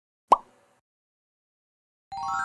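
A single short cartoon 'bloop' pop sound effect: a quick upward-sweeping blip near the start.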